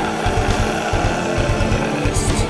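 Heavy metal band playing live in a room: distorted electric guitars chugging over fast, even drum beats.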